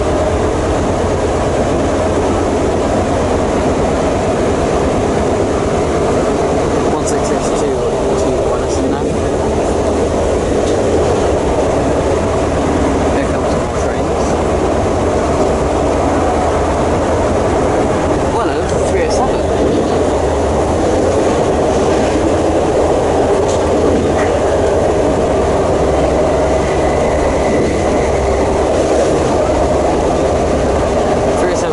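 Steady rumble of a passenger train running along the track, heard from inside the carriage, with a few sharp clicks from the wheels.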